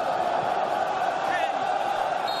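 Steady crowd noise from a football stadium's stands: a continuous din of many voices, even in level throughout.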